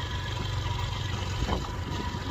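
A steady low engine rumble, as of an engine running at idle, with a brief faint sound about one and a half seconds in.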